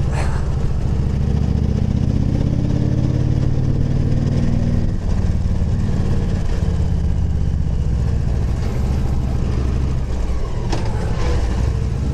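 Victory touring motorcycle's V-twin engine running under way, its note rising as it pulls for the first few seconds, dropping back about five seconds in, then holding steady, with wind rush over it.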